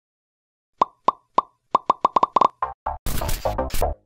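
A run of short, ringing pop sound effects, about nine of them, coming faster and faster. Electronic music with a heavy beat starts about three seconds in.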